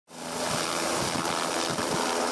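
Helicopter flying close by, its rotor and engine making a steady loud rushing noise.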